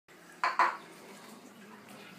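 Two quick clinks of tableware on a table about half a second in, close together and the second louder.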